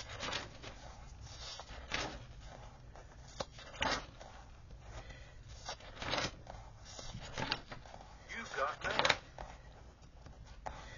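Pages of a ring-bound paper planner being turned one after another: a short, quiet paper rustle every second or two, coming more thickly near the end.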